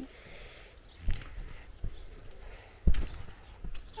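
Trampoline mat thudding under a child's bounces and landings: a few dull low thumps, the loudest about three seconds in.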